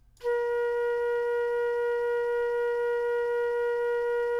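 Looped flute sample playing back in the Specimen sampler: one steady flute note starting a moment in, with a rhythmic beating of faint regular clicks. The beating comes from an abrupt jump where the loop returns from its end point to its start point.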